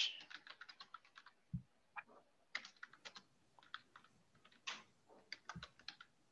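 Faint computer keyboard typing, runs of quick keystrokes with pauses between them, as a sentence is typed out. A couple of heavier, duller key hits stand out among the clicks.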